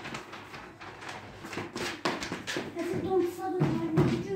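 A toddler's small shoes tapping and stamping on a ceramic tile floor as he dances, in quick irregular taps. A voice holds a note near the end.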